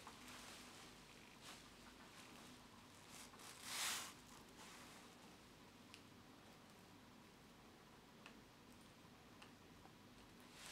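Near silence with a few faint ticks from a small screwdriver slowly turning a stripped phone screw held by super glue on its tip, and one brief soft rustle about four seconds in.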